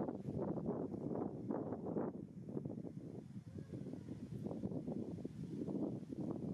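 Wind buffeting the microphone outdoors: an irregular, gusty low rumble that rises and falls.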